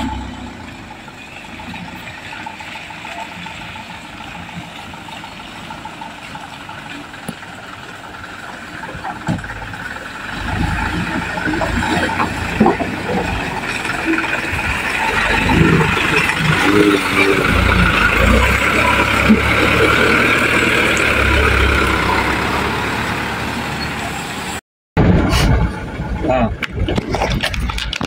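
Fuso light truck's engine labouring as the truck drives toward the camera along a muddy, rutted track, getting louder and closer from about ten seconds in. The sound cuts off abruptly near the end.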